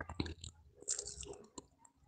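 Faint mouth noises: a scattering of small clicks and smacks.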